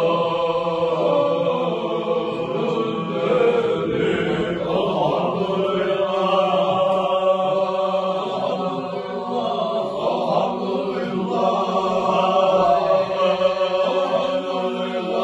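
Men's voices chanting an Islamic dhikr (zikr) together, unaccompanied, in long held notes.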